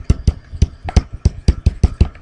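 A stylus tapping and clicking against a tablet surface while handwriting, a quick irregular run of sharp clicks, about seven a second.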